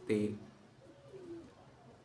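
A pigeon cooing softly about a second in, a faint low call that bends down in pitch.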